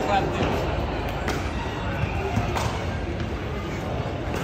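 Background chatter of several voices over a steady hum of crowd noise, with a couple of faint knocks about a second and two and a half seconds in.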